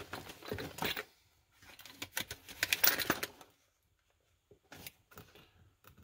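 Plastic blister-pack padlock packages being handled: light clicking and crackling of the stiff plastic and card, in two bursts over the first few seconds, then a few faint clicks near the end.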